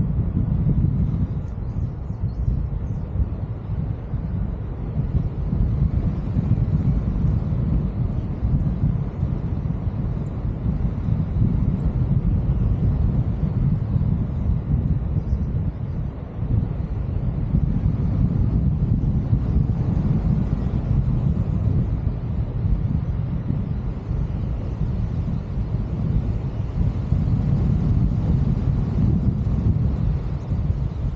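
Wind rushing over a camera microphone during a tandem paraglider flight: a steady low rumble that surges and eases in gusts.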